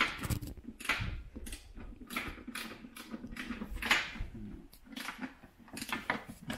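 Socket ratchet on a 10 mm socket being worked in short, irregular strokes, each swing giving a brief burst of clicks, as a bolt is drawn tight.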